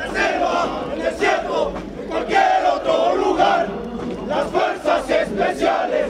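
A column of Mexican army soldiers shouting a marching chant in unison: many men's voices together, loud throughout.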